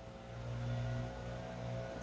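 A faint, steady engine hum with an even pitch, swelling slightly about half a second in.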